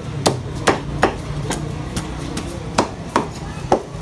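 A knife striking a large fish on a thick wooden chopping block: sharp knocks about two a second, unevenly spaced, as the fish is cleaned.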